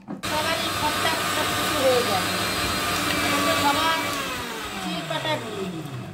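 Electric mixer-grinder running at full speed, grinding the lentils for the dalpuri filling into paste. It is switched off about four seconds in, and its whine falls in pitch as the motor spins down.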